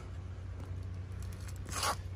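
Faint handling noise: a low steady hum under a soft rustle, with one short rustling scrape near the end.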